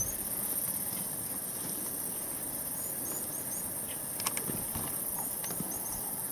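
Bush ambience: a steady high-pitched insect drone, with short rising bird chirps in small groups a few times and a couple of light clicks a little past the middle.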